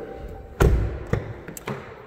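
A car door on a Jeep Cherokee being shut with a heavy thump about half a second in, followed by two lighter clicks.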